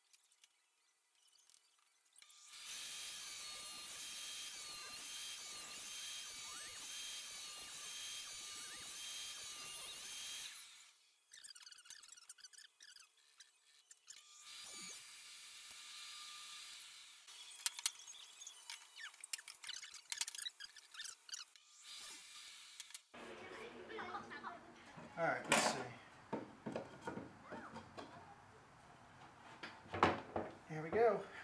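Table saw with a stacked dado blade running, cutting a half-lap notch in a thick wooden beam. It runs steadily for about eight seconds, stops, and runs again briefly. Knocks and clicks of the board being handled follow.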